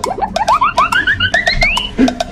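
Comic background music: a string of short upward pitch swoops, each starting a little higher than the last, over a quick ticking beat.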